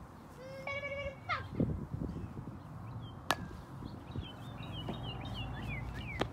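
A single sharp crack about three seconds in: a plastic wiffle ball bat hitting the ball. Birds chirp in the background, with a short held high call near the start.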